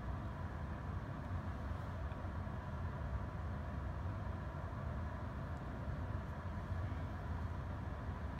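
Steady low rumble and hiss of room background noise, with no distinct events.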